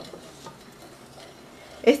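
Wooden spoon stirring milk and cocoa in a stainless steel pot, faint scraping with a few light knocks against the pot.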